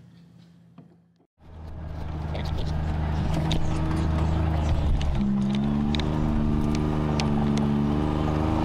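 Motor vehicle engine running steadily after a faint hum and a brief silence about a second in. About five seconds in its pitch steps up and then climbs slowly, as when the vehicle accelerates, with a few light rattles on top.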